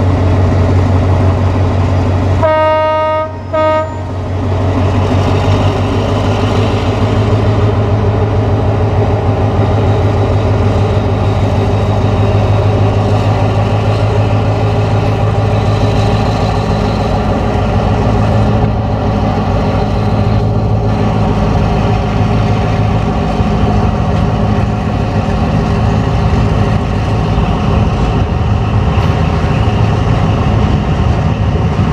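Diesel locomotive No. 4213 running with a steady low engine drone as it hauls the train away. Its horn sounds two blasts about two and a half seconds in, a longer one then a short one.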